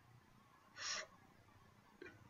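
Near silence with a single short, hissy breath from the man about a second in.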